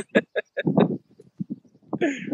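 Laughter on a video call: a quick run of short laughs in the first second, trailing off into fainter breathy ones.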